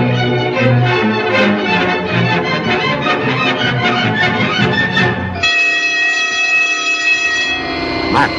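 Orchestral film score playing a busy, quick-moving passage. About five and a half seconds in it switches abruptly to a steady held chord that lasts about two seconds.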